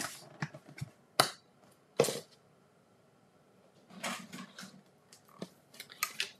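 Plastic knocks and clicks from a Stampin' Cut & Emboss die-cutting machine's fold-out platforms and cutting plates being handled: three sharp knocks in the first two seconds, then softer handling noises and a couple of light taps near the end.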